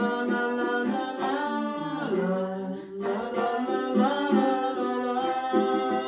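A woman singing a slow folk ballad, accompanied by strummed ukulele and acoustic guitar.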